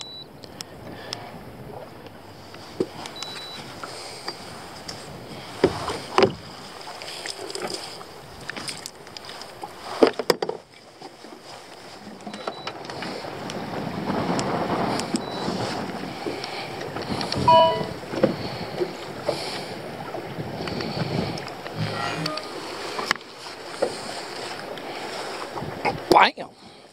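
Strong wind buffeting the microphone and choppy water lapping against a fishing boat, swelling in a stronger gust about halfway through, with a few sharp knocks.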